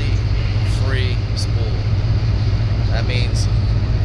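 Steady low drone of an idling boat engine, with faint voices in the background.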